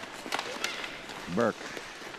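Ice hockey play on an arena rink: a few sharp stick-and-puck clacks in the first second over a steady hiss of rink noise. A man's voice calls one name near the end.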